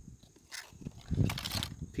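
Handling noise of a thin, rusty scrap-metal strip being moved and set down on concrete: soft rustling and scraping with a low bump a little past a second in and a few short clicks near the end.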